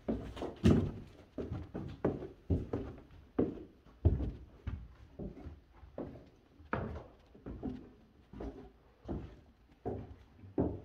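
Footsteps going down a staircase, about two heavy steps a second.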